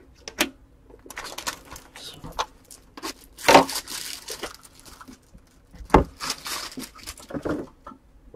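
Trading cards and foil pack wrappers being handled on a tabletop: irregular rustling, crinkling and clicks, with a louder crinkling rush about three and a half seconds in and a sharp tap near six seconds.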